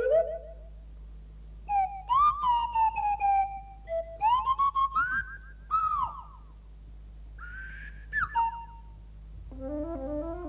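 Clangers talking in slide-whistle voices: several short whistled phrases of gliding pitch, some falling and some rising then falling, between about two and eight and a half seconds. A light stepped tune begins near the end.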